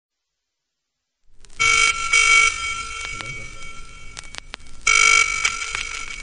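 A telephone ringing in a double-ring cadence: two short rings close together about a second and a half in, a pause, then another ring about five seconds in, with a few faint clicks in between.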